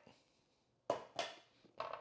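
Short knocks on a wooden cutting board as a whole eggplant is laid down and a kitchen knife is picked up: two knocks about a second in and a fainter one near the end.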